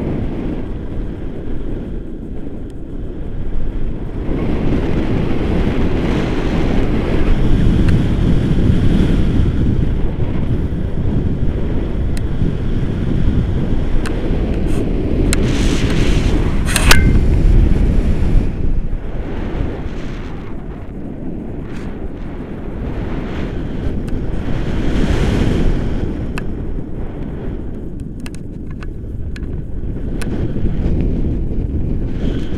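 Wind buffeting the camera microphone during a tandem paraglider flight: a loud low rumble that swells and eases in gusts. A brief sharp crackle comes about halfway through.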